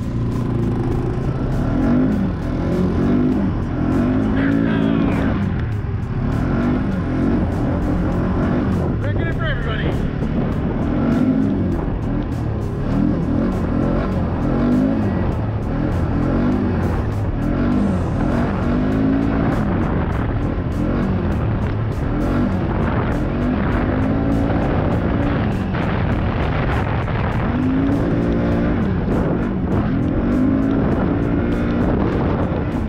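ATV engine revving up and down again and again while riding, its pitch rising and falling every second or two over a steady low rumble.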